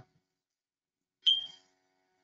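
Near silence, broken a little past halfway by one short, sudden ding-like sound with a high ringing tone that fades within a fraction of a second.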